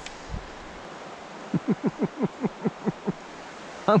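A steady rush of flowing river water and outdoor air. About a second and a half in, a quick run of about nine short squeaks falls in pitch, roughly five a second.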